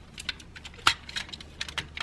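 Small plastic clicks and snaps from the hinged parts of a Buffalo Wild Zord toy being turned and folded by hand, with one sharper click about a second in.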